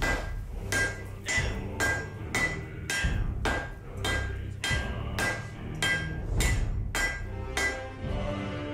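Hand hammer striking a glowing laminated steel billet of nickel, C75 and 80CrV2 on an anvil, about two blows a second, each with a short metallic ring. These are the first blows of forge welding the layers together.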